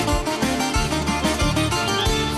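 Live band playing an instrumental passage of a Greek popular song: plucked strings over a bass line and a steady beat, with no vocals.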